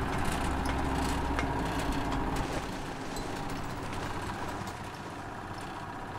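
Machinery of a working oil drilling rig running with a steady low engine rumble and a few light knocks; the rumble drops away about two and a half seconds in, leaving a quieter mechanical din.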